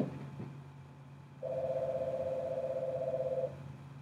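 A phone ringing with an incoming call: one warbling electronic ring lasting about two seconds, starting a little over a second in.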